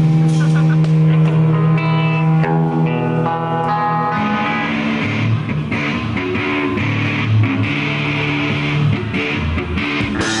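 Live rock band playing electric guitar and bass guitar, with clear picked guitar notes over a sustained bass note at first. The sound grows fuller and noisier about four seconds in.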